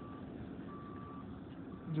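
A vehicle's reversing alarm beeping: a single steady tone in half-second beeps about once a second, over a low background rumble.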